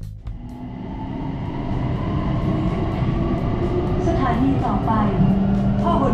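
Steady road traffic noise from cars and vans on a busy multi-lane road, building up over the first couple of seconds. Brief voices are heard about four seconds in.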